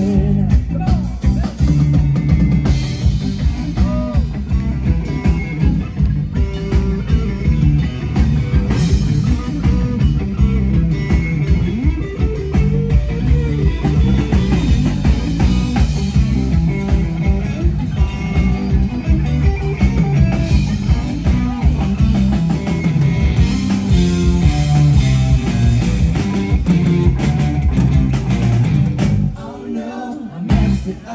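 Live rock band playing: electric guitars, bass guitar and drum kit with a steady beat. The band drops out briefly near the end.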